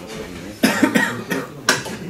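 A person coughing several times in short, sharp bursts.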